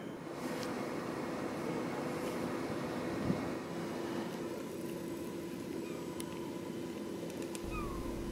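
Faint outdoor background: a steady low hum, with a few short high calls near the end.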